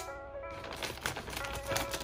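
Scissors cutting open the top of a plastic bag of landscaping substrate: a quick run of small clicks and crinkles of plastic, over background music.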